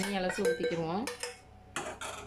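A metal spoon scraping and tapping against a bowl and an aluminium cooking pot, with a few sharp clinks in the second half. A person's voice, rising and falling in pitch, is the loudest sound in the first second.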